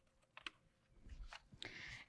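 Near silence in a pause of a speech, broken by a few faint, short clicks.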